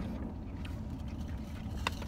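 Steady low rumble of a car idling, heard inside its cabin, with a few faint small clicks.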